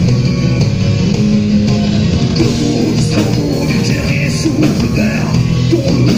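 Rock band playing an acoustic set live: acoustic guitar, bass and drum kit, with a man's voice singing over them.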